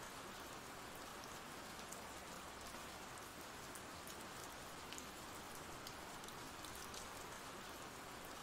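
Faint, steady rain ambience: an even patter with a few scattered drop ticks.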